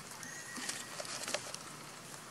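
A long-tailed macaque walking over grass and dry leaves, with a few light crackles of leaves underfoot around the middle. A thin, steady whistle-like call sounds from about a quarter second in and stops after about a second.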